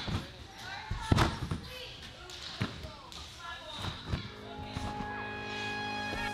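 Trampoline bouncing: the bed thuds at each landing, about every second and a half, the loudest about a second in. Voices chatter underneath, and steady music comes in over the last second or two.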